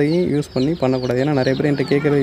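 A man's voice speaking, continuing the narration. No other sound stands out from it.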